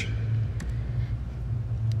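Room tone with a steady low hum and faint hiss, and two faint ticks about half a second in and near the end.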